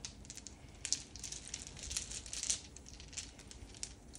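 Dice clicking and rattling against one another inside a cloth dice bag as a hand rummages through them, a steady run of small clicks with a few louder clacks.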